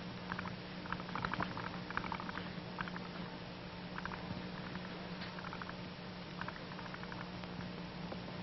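Faint, irregular crackling of lots of little soap bubbles forming and popping at the bowl of a bubble pipe as air is blown slowly through it, in small clusters over a steady hum and hiss.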